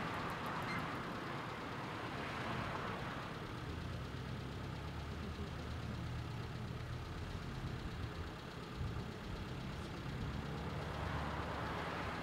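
Road traffic: a car drives past close by, its tyre and engine noise fading over the first three seconds, followed by a low, steady engine hum from a vehicle idling out of view. Near the end the noise of another approaching car rises.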